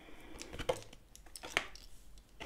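Oracle cards being laid face up on a table one after another: a few light taps and slides of card on the tabletop, the sharpest about one and a half seconds in.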